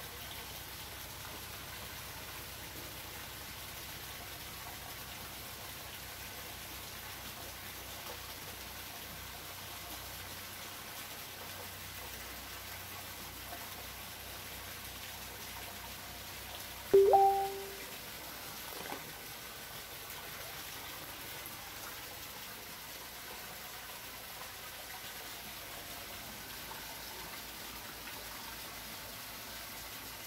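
Steady rush of water pouring and splashing into a stingray holding tank. A little past halfway there is a single short, loud pitched note, with a faint click about two seconds later.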